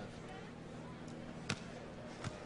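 A hand striking a beach volleyball on the serve: one sharp slap about one and a half seconds in, over a steady background of crowd and stadium noise.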